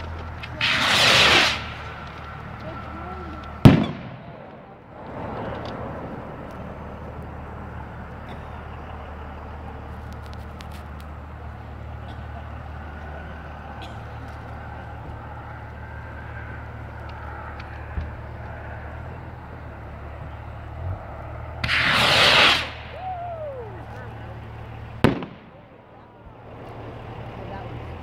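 Two skyrockets launching in turn. Each goes up with a brief rushing whoosh, followed about three seconds later by a sharp bang as the head bursts, with the second bang near the end. A steady low hum runs underneath.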